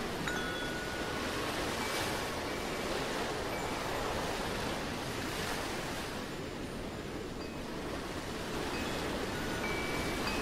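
Sparse wind-chime tones ringing over a steady rush of ocean surf that swells and ebbs gently.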